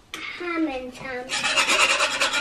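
Wire whisk beating cheese sauce in a pan, scraping against the pan in quick, even strokes that start a little past halfway through.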